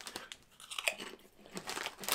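A person crunching and chewing a potato chip: a scatter of short, crisp cracks.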